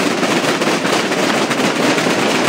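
A large group of Holy Week procession drummers beating snare drums together: a loud, dense, unbroken rattle of many strokes.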